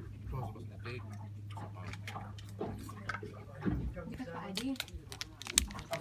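Metal spoons clicking and scraping on plastic plates while people eat, over quiet voices and a steady low hum that stops about two-thirds of the way through. Sharp crinkles of a foil snack wrapper being handled near the end.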